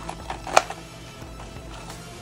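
A few sharp plastic clicks, the loudest about half a second in, as a small plastic plant pot is slipped down into a plastic egg-crate grid. Steady background music plays underneath.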